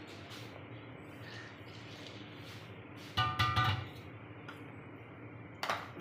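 A short ringing sound about three seconds in, several steady tones over a dull thud, lasting under a second, against low room noise.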